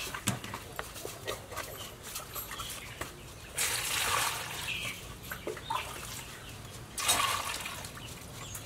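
Fish being scrubbed with salt by hand in metal bowls, with small scrapes and knocks against the metal. Water poured from a plastic basin splashes into a steel bowl twice, about halfway through and again near the end.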